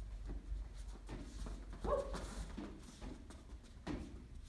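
Hands batting a large rubber balloon up into the air, a few light taps spread over the seconds. A woman's short exclamation, "Oh", comes about two seconds in.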